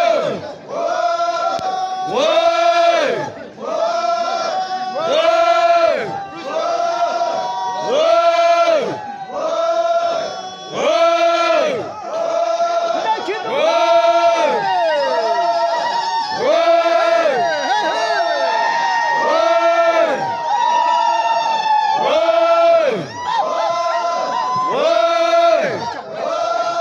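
A large group of Naga men chanting in unison as they march, one rhythmic shouted call repeating about once a second. Through the middle stretch, higher voices glide above the chant in long wavering calls.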